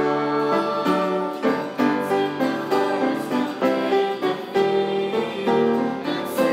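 A small choir of female voices singing a church song together, holding notes and moving between them in a steady rhythm.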